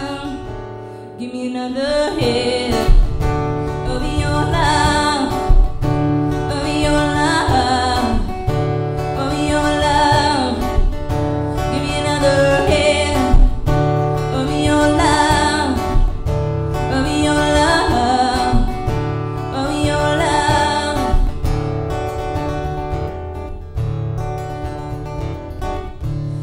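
A woman singing live to her own strummed acoustic guitar, the strumming in a steady rhythm that repeats about every two seconds.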